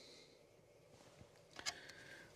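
Near silence, with one faint click about one and a half seconds in as a utility knife is picked up and handled.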